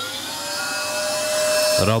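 LG bagged canister vacuum cleaner switched on: the motor's whine rises in pitch over the first half second, then holds a steady tone over a rush of air, growing slightly louder. It runs and sucks, though weakly, which the owner puts down to a bag needing cleaning.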